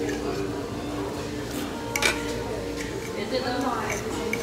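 Table noise while eating: indistinct voices in the background, a sharp clink of cutlery on a plate about two seconds in, and a few lighter utensil clicks.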